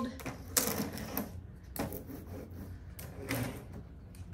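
Rubber brayer rolled over decoupage rice paper glued to window glass: a series of uneven rolling strokes.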